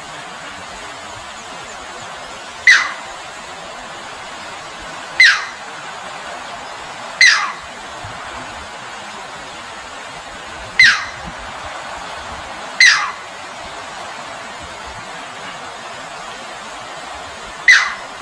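A striated heron giving six sharp, short calls, each falling steeply in pitch, spaced a few seconds apart over the steady rush of a shallow rocky stream.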